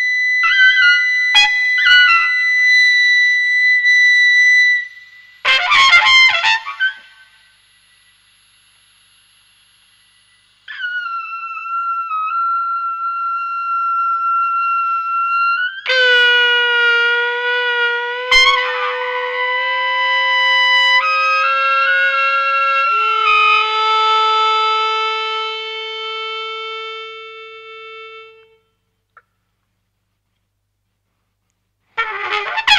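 Free-improvised trumpet music: long held notes with rich overtones, some bending slightly in pitch. A short rough burst about six seconds in gives way to a pause of about three seconds, then held notes return and fade out near the end.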